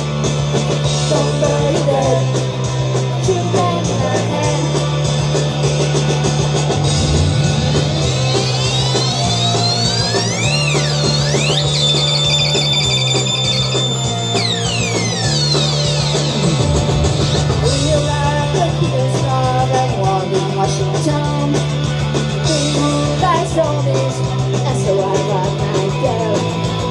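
Live punk rock band playing an instrumental passage: electric guitar over a low line that steps between two notes every second or two. From about 8 to 15 seconds in, a high electronic tone sweeps up and down over the music.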